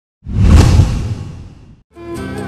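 A whoosh sound effect for an animated title transition: it swells in suddenly about a quarter second in, a deep rumble under a hiss, and fades away over about a second and a half.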